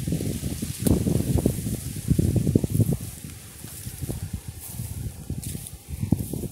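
Walking through a garden: irregular low footfalls on grass and leaves brushing close by, louder in the first half.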